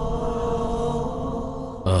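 Film background score: a steady drone held at one pitch, easing slightly in level before a man's voice comes in at the very end.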